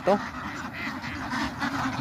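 A large penned flock of domestic ducks calling all at once, many quacks overlapping into a steady jumble.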